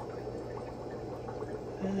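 Steady trickling and bubbling of running aquarium water from the tank's filter, over a faint low hum.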